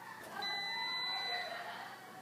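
One long electronic beep, a single steady high tone lasting a little over a second, starting near the beginning and stopping before the end, over faint background voices.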